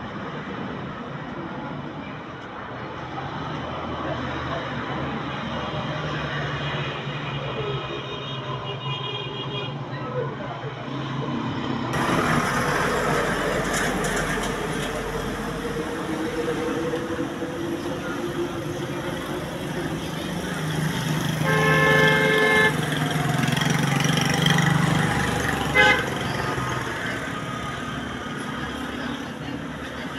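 Street traffic noise with a vehicle horn tooting for about a second a little past the twenty-second mark, and a short sharp sound a few seconds later. The sound turns suddenly brighter about twelve seconds in.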